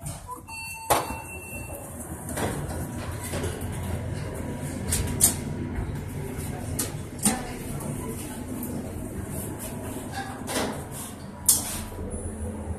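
Otis traction elevator car doors sliding shut with a short steady tone and a click, then the steady low rumble of the cab travelling upward, with a few light knocks.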